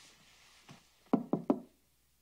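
Three quick, sharp knocks in a row, a little past halfway, with a fainter single knock or footstep before them.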